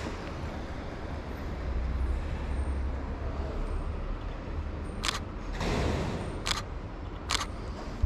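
Three sharp shutter clicks from a Fujifilm X-T30 mirrorless camera in the second half, over a low steady rumble.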